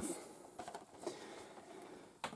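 Faint handling noise from a small cardboard LEGO set box being moved by hand, with a couple of light ticks.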